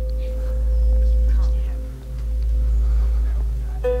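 Sustained ambient film-score drone: a low hum with a few held tones over it. Near the end, plucked banjo music comes in.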